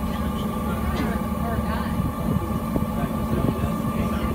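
Steady hum of a submerged submarine's cabin machinery, with indistinct voices of people talking over it.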